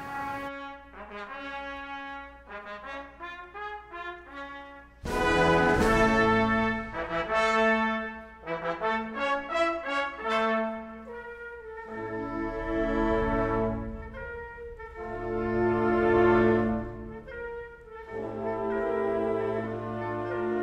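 Symphonic band playing a slow funeral march in D minor, with brass to the fore: soft sustained chords at first, then a loud full-band entry about five seconds in, followed by further swelling phrases.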